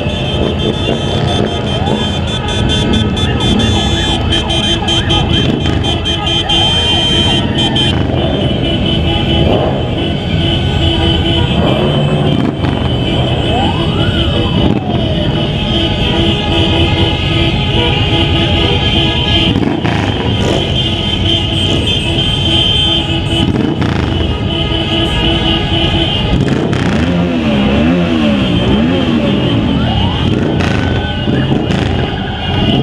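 Motorcycles riding together in a slow convoy: engines running under heavy wind noise on the camera. Over them run steady tones that pulse on and off, and a single whistle-like tone rises and falls about halfway through.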